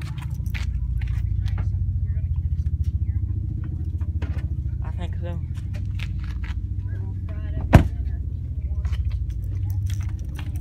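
A steady low rumble with a fine, even pulsing runs throughout, scattered with short clicks and knocks from the handheld camera being carried. There is one sharp, loud knock about three quarters of the way through.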